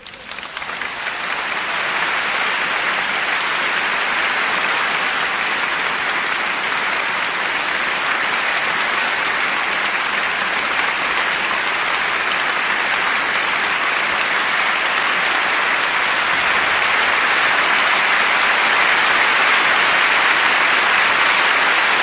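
Large concert-hall audience applauding: the clapping breaks out from silence and builds over the first two seconds into dense, sustained applause that grows a little louder toward the end.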